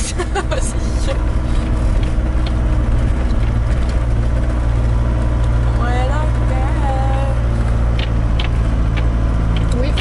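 Van engine and tyre noise heard from inside the cab, a steady low rumble while driving over a rough dirt road, with a few knocks from the bumps.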